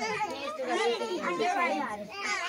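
Overlapping voices of children and adults talking and calling out together, the children's voices high-pitched.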